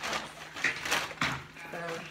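Plastic mailer bag crinkling in a few short bursts as a tool-set case is pulled out of it.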